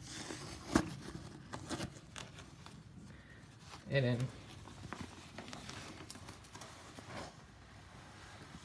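Paper protective wrap on a new iMac being handled and peeled back by hand: light rustling and scattered small clicks, with one sharper tap about a second in.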